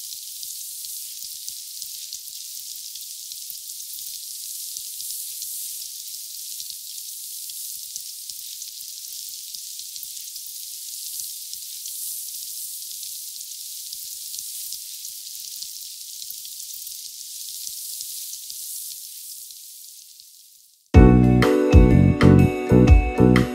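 Oil and chopped onions, pepper and sardine sizzling in a frying pan: a steady, high crackling hiss that fades out near the end. Music starts abruptly in the last second.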